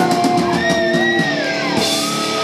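Live rock band playing loud, with a distorted electric guitar in front; held notes slide up and down in pitch.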